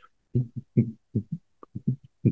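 A quick, irregular series of about nine short, soft low thumps.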